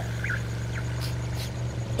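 Steady low motor hum of a cartoon amphibious jeep moving across water, with a couple of faint short chirps in the first second and two soft hissy sounds a little past the middle.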